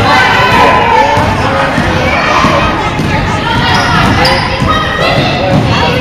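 Basketball dribbled on a hardwood gym floor, with a crowd of spectators' and players' voices and shouts echoing in the gym.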